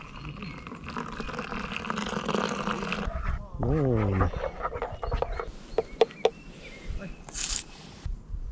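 Hot water poured from a camping-stove pot into a wooden cup of instant cappuccino powder: a steady splashing pour for about three seconds. Then a brief falling tone, and a spoon stirring in the cup with a few sharp clicks, and a short hiss near the end.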